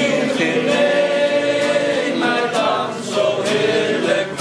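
Several voices singing a song together, with an acoustic guitar accompanying them.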